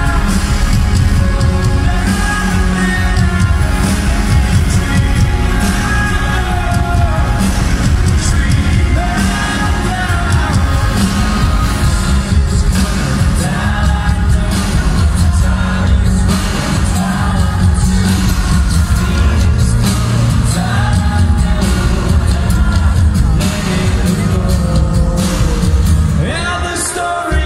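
Live rock band playing loudly in an arena: pounding drums and heavy bass with singing over the top, heard from within the audience.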